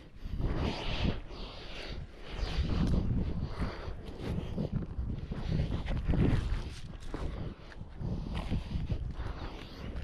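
Climbing noise close to the microphone: hands, sleeves and shoes scraping and rubbing on pine bark and branches, with irregular rustles and low thumps as the climber pulls himself up.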